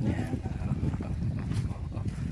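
Indistinct voices of a group of people chatting, under an irregular low rumble of wind on the microphone.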